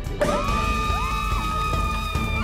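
Several women screaming in celebration: a high 'woo' that rises and is held for about two seconds, with a second voice joining briefly, over background music.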